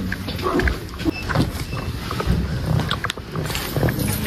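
Handling noise from a phone microphone being carried: rustling and rubbing against clothing and a bag, with irregular small knocks and clicks.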